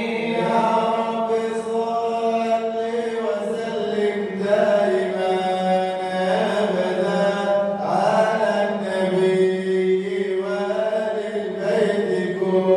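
Male voice chanting an Arabic devotional praise poem (madih nabawi) unaccompanied, in long drawn-out notes that slide and bend in pitch, over a steady low drone.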